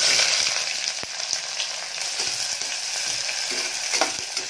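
Sliced red onions tipped into hot oil in a pressure cooker, sizzling loudest as they land, then frying on with a steady hiss and a few faint clicks.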